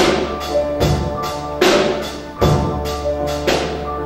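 A small band of trombone, upright piano, electric guitar and drum kit playing a slow piece in sustained chords, with a ringing cymbal crash and drum hit on each beat, a little under a second apart.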